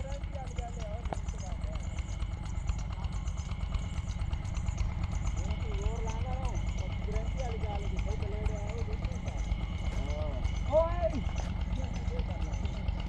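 Faint, distant voices of people talking over a steady low rumble, with a short voice about eleven seconds in.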